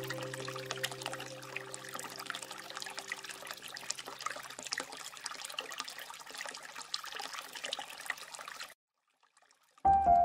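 Water trickling and splashing, with the last held notes of soft music fading out over the first few seconds. Near the end the sound cuts off suddenly, there is about a second of silence, and new music begins.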